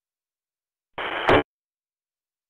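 A short burst of radio static on a GMRS repeater channel, about half a second long, ending with a sharp click: a transmitter briefly keyed and released with no voice, the squelch opening and closing.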